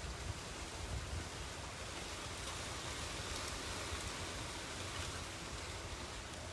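Steady outdoor background noise: an even hiss with a low rumble underneath.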